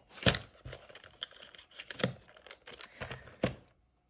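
Cardboard packaging being handled: the white case of a paint pan set slid and pushed back into its cardboard box, giving a run of rustles and sharp clicks, the loudest about a quarter second in, at about two seconds and just before the end.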